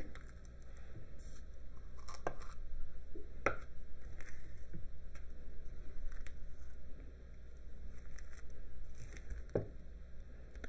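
Silicone spatula scooping and scraping thick whipped sugar scrub from a ceramic bowl into a small glass jar: soft squishing and scraping, with a few light taps of the spatula against the containers.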